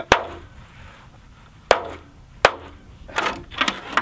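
A hammer striking a clear corrugated Tuftex polycarbonate greenhouse panel: three sharp, separate hits, then a quick run of lighter knocks near the end. The panel is being tested for hail resistance.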